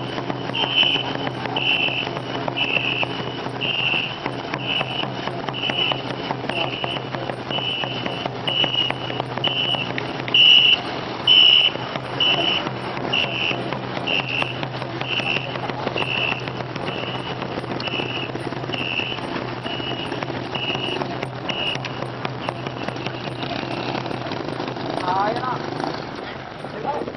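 A whistle blown in short, high blasts about once a second, keeping the stroke rhythm for a crew paddling a ngo longboat; the blasts stop a few seconds before the end. Under it run a steady low hum and the noise of paddles churning water.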